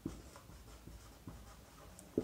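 Whiteboard marker writing on a whiteboard: faint, short strokes as a few words are written.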